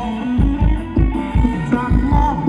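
Live Thai ramwong dance band playing loudly, with a steady kick-drum beat a little over two beats a second under a melody line.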